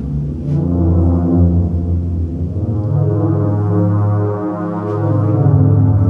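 Low, sustained software-synthesizer notes, several overlapping, changing pitch every second or so as hand movements tracked by a Kinect send MIDI notes to the synth.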